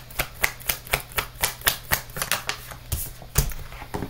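A quick, even run of sharp clicks, about five a second, over a steady low hum.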